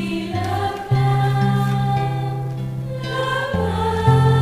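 Choir singing a church hymn over held low accompaniment notes, which change about a second in and again near the end.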